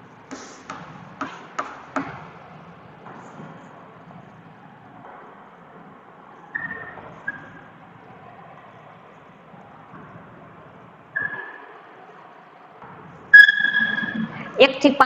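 Chalk writing on a chalkboard: a quick run of sharp taps in the first two seconds, then faint scratching broken by a few short, high squeaks, the loudest just before the end.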